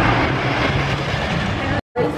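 Amusement park ambience: a steady wash of noise with distant voices and a low hum that fades out in the first second. The sound cuts out completely for a moment just before the end.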